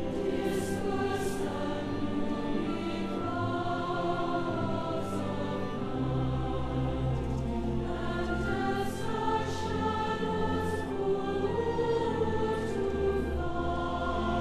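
Choir singing a Christmas carol in long held chords over low sustained bass notes that change every few seconds, with the singers' 's' sounds cutting through now and then.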